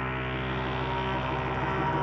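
Slow ambient space-rock intro: a sustained synthesizer drone of many layered steady tones, growing brighter and slightly louder near the end.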